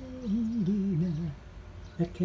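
A person humming a melody: a held note that breaks into a wavering, falling line and stops a little past halfway.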